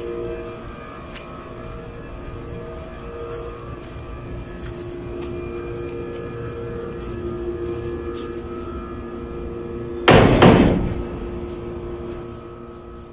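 Steady background hum, then a loud bang about ten seconds in as a door shuts.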